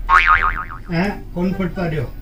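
A cartoonish comedy sound effect: a tone whose pitch wobbles quickly up and down for about half a second. A man's voice follows from about a second in.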